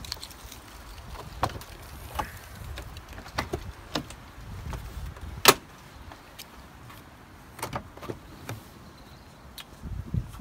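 Ford Excursion's rear cargo door being unlatched and swung open: a series of short latch clicks and knocks, with one loud sharp clunk about five and a half seconds in.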